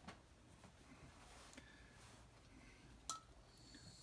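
Near silence: room tone, with a faint click at the start and another a little after three seconds.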